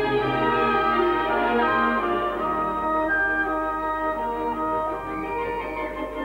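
Orchestral backing music for a stage dance, with long held notes and chords.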